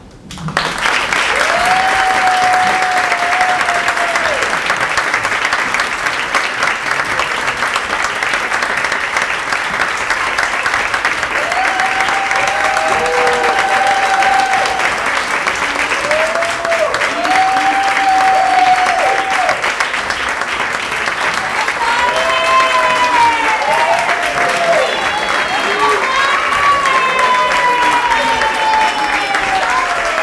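Audience applauding steadily, with voices calling out in long cheers over the clapping at several points, most of them near the end.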